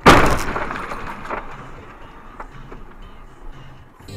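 Car crash: a sudden, very loud impact at the start that fades over about a second, then a second, weaker bang about a second later and a few faint clicks and rattles.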